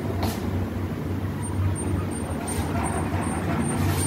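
Gas stove burner running under a steel cooking pot: a steady low rumble with a hiss.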